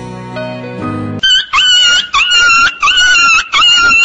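Soft music for about a second, then a run of about six loud, high-pitched cries in quick succession, each about half a second long: a comedy sound effect.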